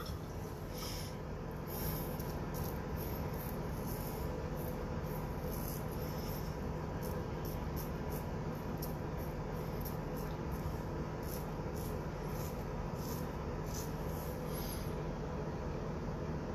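TFS DiVino razor scraping through lathered stubble in short, repeated strokes, a few per second, over a steady low background hum.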